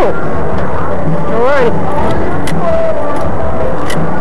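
Wordless voices calling out over a steady low rumble: one rising-and-falling call about a second and a half in, and a held note a little later. A couple of sharp clicks are also heard.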